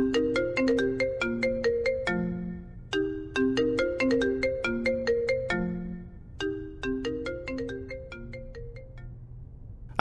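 Mobile phone ringtone playing a short repeating melody of struck notes, the phrase coming round every three to four seconds. It grows fainter and stops about a second before the end, as the call is answered.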